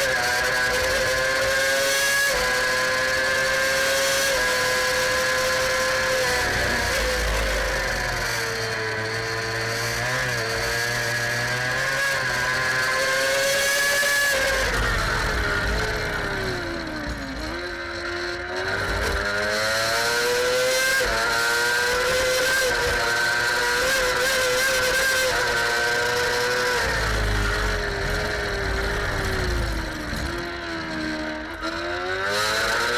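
Onboard sound of a Formula 2 racing sidecar's engine held at high revs, its pitch falling steeply about halfway through as it slows, then climbing again as it accelerates away.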